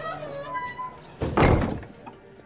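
Heavy red-painted wooden double gate slammed shut about a second in: one loud thud with a short ringing tail.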